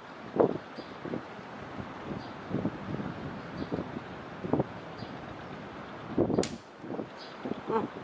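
OTT-style flat-band catapult shot: soft handling rustles while the bands are drawn and held, then one sharp snap of release about six and a half seconds in, firing an 8 mm steel ball.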